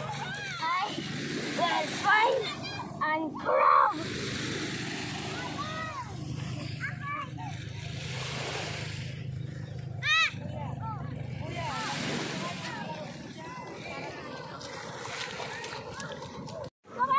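Children's high voices calling and chattering in short bursts over the recurring hiss of small waves washing up the beach, with a low steady hum underneath.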